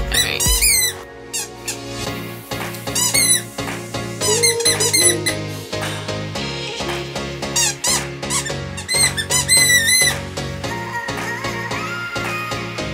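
A dog chewing a squeaky toy, which squeaks in about five short, high-pitched bursts over background music with a steady beat.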